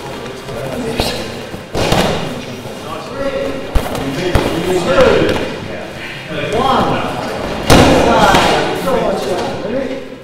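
Judoka thudding onto foam judo mats as they are thrown during free practice, several sharp thuds with the loudest about eight seconds in, over indistinct voices in the hall.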